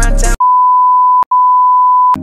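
A steady, high electronic beep tone, the test tone that goes with TV colour bars, used here as a glitch transition effect. It cuts in sharply after a moment of hip hop music, breaks off with a click about halfway through, then carries on.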